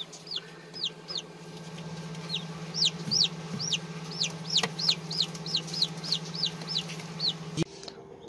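Newly hatched chicks peeping: a run of short, high, downward-sliding peeps, about three a second, over a steady low hum that stops near the end.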